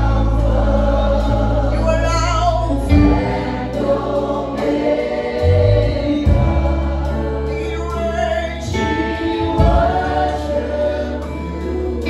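Live gospel worship music: several voices singing together over a band, with long sustained low bass notes underneath.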